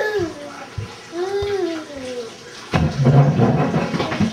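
A baby vocalising without words: two long drawn-out coos whose pitch rises and then falls, followed near the end by a loud, rough, noisy burst of sound.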